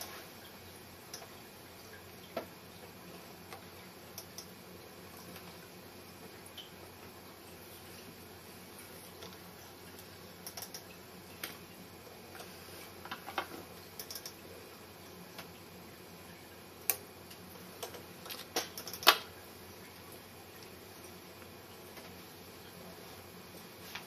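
Sparse small clicks and taps from hands working fly-tying tools at a vise, over a faint steady background. The clicks grow more frequent in the second half, with the loudest sharp click near the end.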